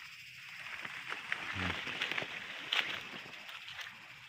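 Coffee leaves and branches rustling as a hand handles clusters of green coffee cherries, with a few brief clicks. A steady faint high-pitched hiss lies underneath.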